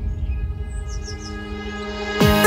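Quiet breakdown in a melodic deep house track: sustained synth chords over a soft low bass, with a quick run of about four short, high, bird-like chirps a little after a second in.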